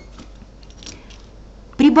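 Faint rustle and light clicks of a ruler and hands moving over paper on a table as the ruler is laid onto a paper pattern. A woman's voice starts near the end.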